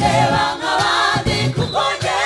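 Gospel choir singing together, many voices in harmony, with short breaks between phrases.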